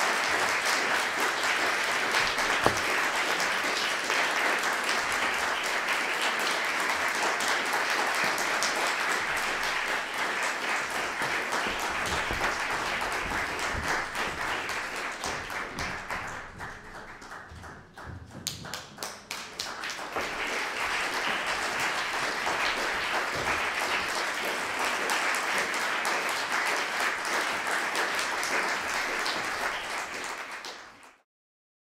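Audience applauding. The applause thins out to scattered separate claps about seventeen seconds in, then swells back up into full applause.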